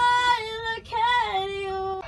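A young woman singing solo without accompaniment: two sustained sung phrases with a short break a little under a second in, the second ending on a long held note.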